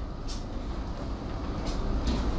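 Marker pen writing on a whiteboard, a few faint scratchy strokes over a steady low room hum.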